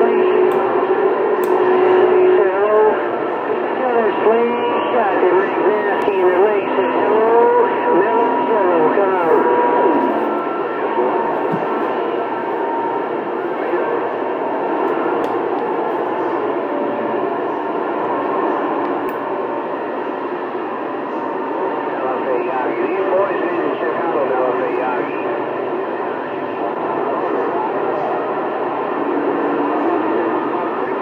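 CB radio receiving long-distance skip on channel 28: garbled, overlapping voices of distant stations over band noise. A steady whistle sounds at first and others come and go.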